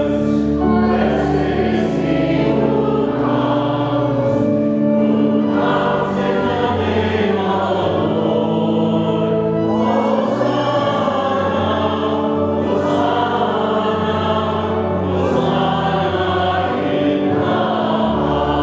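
Church choir singing a sacred piece in slow held chords over a steady low accompaniment.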